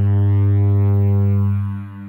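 Roland System-100 software synthesizer playing one held low note on the "LD Cosmic Awe" lead patch, rich in overtones. The note holds steady and then starts to fade about a second and a half in.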